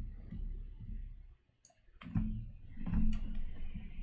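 A few sharp clicks over soft low thumps, with a near-silent gap about a third of the way in; the loudest click comes about three seconds in.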